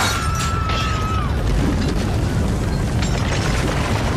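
Earthquake sound effect: a continuous deep rumble with crashes of falling masonry and tiles. A long high scream rises and breaks off in the first second.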